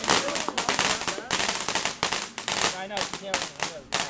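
Ground fountain firework spraying sparks with rapid, irregular crackling pops.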